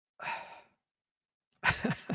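A man's short breathy exhale, then a sharp burst of laughter near the end, the loudest sound.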